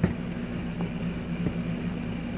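Steady low machine hum with a faint hiss, with a short knock at the start and a few faint ticks.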